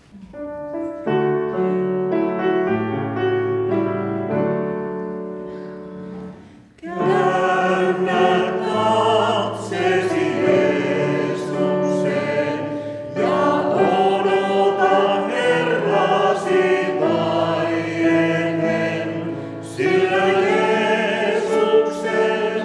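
An accompaniment of held chords plays a short introduction, then about seven seconds in a mixed vocal quartet of two men and two women starts singing a hymn in harmony over it.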